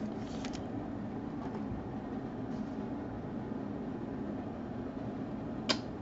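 Steady low background hum of a small room, with a short click near the end.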